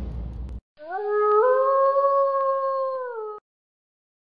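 A single wolf howl: one long call that rises in two steps, holds, then drops away at the end, lasting about two and a half seconds. Intro music cuts off just before it.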